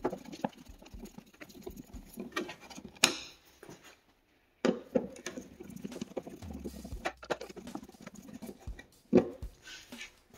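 Small screws being turned out of a motorcycle's plastic dash panel with a hand screwdriver: light scratchy clicks and scrapes of the metal tool on the screws and plastic, with a sharper click about three seconds in and another near the end.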